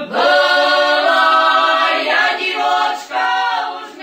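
Unaccompanied choir singing a folk song, several voices in harmony, phrase after phrase.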